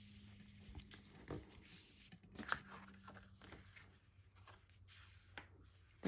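Faint rustling and sliding of cardstock, with a few soft taps, as a paper piece is pushed in and out of a paper pocket, over a low steady hum.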